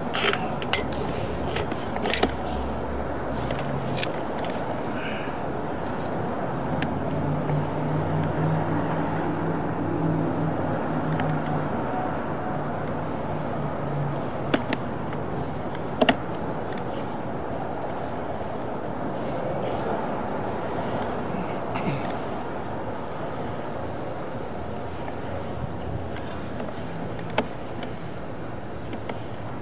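Steady street traffic noise, with a low engine drone rising for a few seconds in the middle, and scattered sharp clicks and knocks.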